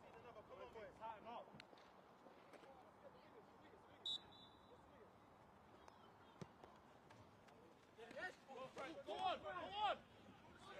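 Footballers shouting to one another on the pitch, heard faintly through the field audio, with one short referee's whistle about four seconds in for the kickoff. The shouting gets louder near the end.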